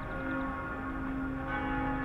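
Ambient background music of sustained, bell-like tones held steady.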